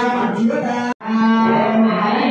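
Sanskrit mantras chanted on a steady, drawn-out pitch during a homam, cut off abruptly for a moment about halfway through before the chanting resumes.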